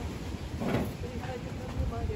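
Indistinct voices of people talking in the background over a fluctuating low rumble, with one short noisy sound a little under a second in.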